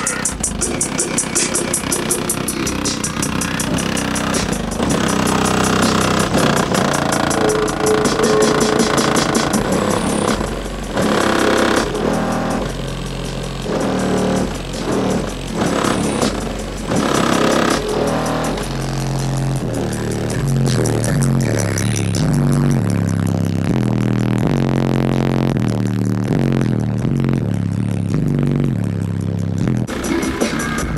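Music with a heavy bass line that steps from note to note, played loud on a car audio system: a Taramps MD 5000 amplifier driving four 12-inch Sundown subwoofers, heard from outside the truck.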